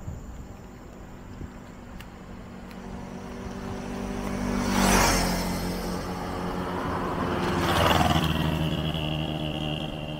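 Two motor vehicles drive past one after the other, each growing louder and then fading. The first peaks about halfway through and the second about three seconds later, with a thin high whine after it.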